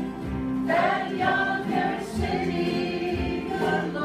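A large bluegrass ensemble singing together in chorus over acoustic guitars and upright basses, with the voices coming in strongly just under a second in.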